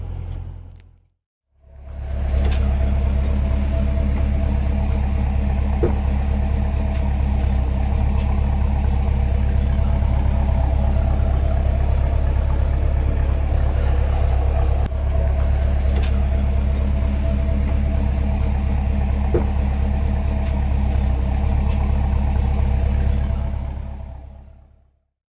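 Dodge Challenger R/T Scat Pack's 6.4-litre (392) HEMI V8 idling, a steady, deep, even exhaust rumble with no revving.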